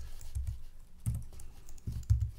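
Typing on a computer keyboard: a few irregular keystrokes, each a short click with a low thud.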